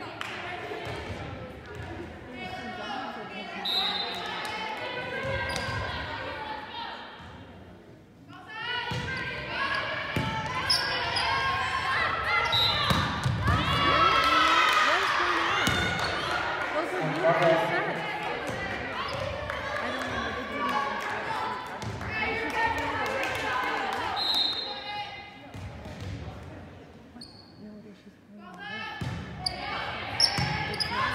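Volleyball players and spectators shouting and cheering in a reverberant gym, with the ball's hits and thuds echoing among the voices. The voices swell loudest from about nine to sixteen seconds in.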